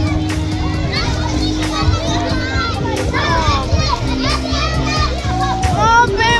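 A crowd of children playing and shouting in a swimming pool, many high squeals and calls overlapping, with music in the background.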